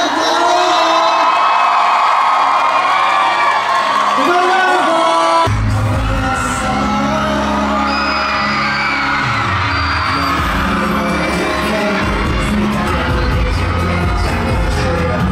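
A concert crowd cheering and screaming, then about five seconds in, pop music with a heavy bass starts abruptly, with singing over the crowd.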